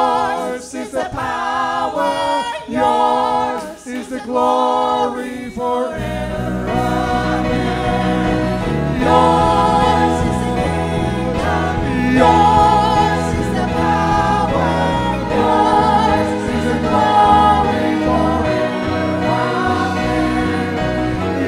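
A church worship team and congregation singing a hymn. The voices are nearly unaccompanied at first, and about six seconds in the band comes in with a low accompaniment under the singing.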